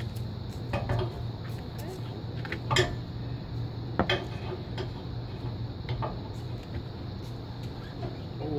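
Metal clinks and knocks from a hand wrench working a bolt on a boat trailer's steel bow-stop and winch stand: a few sharp separate strikes, the loudest a little under three seconds in, with another about four seconds in.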